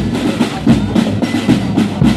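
Marching drum band playing: big bass drums beating a steady rhythm about every half second, with snare drums rattling between the strokes.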